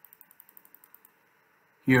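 Computer mouse scroll wheel ticking through its notches, a quick even run of about ten light clicks a second that stops about a second in.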